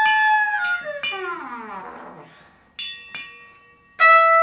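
A trumpet holds a sustained note, then falls away in a long downward glide that fades out. Near the end a metal percussion plate is struck, ringing with a bell-like tone, and is tapped again lightly just after.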